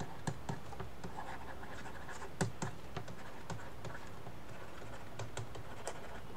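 A stylus writing on a tablet surface: irregular light taps and scratches as words are handwritten, with one louder tap about two and a half seconds in.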